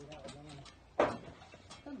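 Men talking in short, quiet remarks, with one sharp knock about halfway through.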